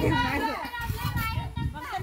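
Several people's voices talking and chattering over one another, in a language the recogniser did not catch.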